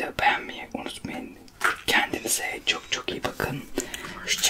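Whispered speech from a man and a woman talking in turn.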